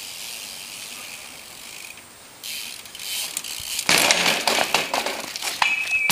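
BMX bike rolling on asphalt with its rear hub ticking. About four seconds in comes a loud run of clattering knocks as the bike is thrown down and tumbles across the pavement on a bailed barspin.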